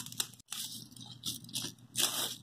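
Plastic and cardboard packaging being pulled open by hand: short, scattered crinkling and crackling, with a brief dead gap about half a second in.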